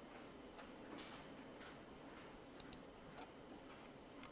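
Near silence over room tone, broken by a few faint, irregular clicks of a computer mouse being clicked.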